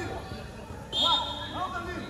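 Voices calling out across a training pitch, with a sudden loud sound about halfway through that holds a steady high tone for about a second.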